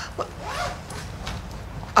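A zipper being pulled along a bag, fairly quiet.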